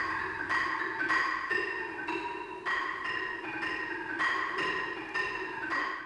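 A small mallet keyboard instrument played with mallets: a melody of single struck notes, about two a second, each ringing briefly, over a steadier lower tone.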